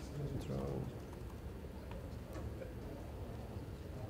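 Quiet room tone of a large hall. About half a second in there is a brief low vocal murmur, and a few faint keyboard clicks follow.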